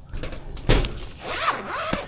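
Folded fabric solar-blanket case being handled: a thump about two-thirds of a second in, then fabric rustling as the folded panels are pulled open.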